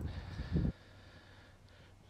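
A low background rumble with a brief low sound that cuts off abruptly under a second in, leaving near silence with a faint hiss.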